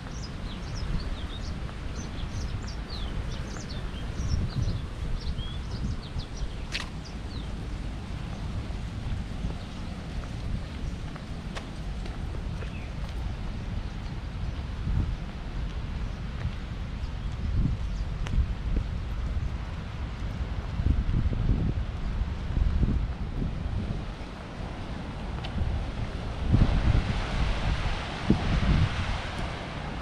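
Wind rumbling steadily on the microphone, with small birds chirping in the first few seconds. A brighter rushing hiss rises near the end.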